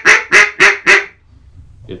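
Duck call blown in a comeback call: a fast run of short, loud quacks, about four a second, that stops about a second in.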